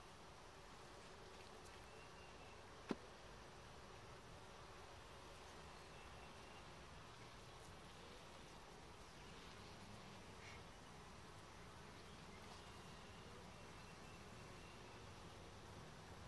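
Faint, steady hum of Russian hybrid honey bees from an opened top-bar hive as a comb is lifted out. One sharp click about three seconds in.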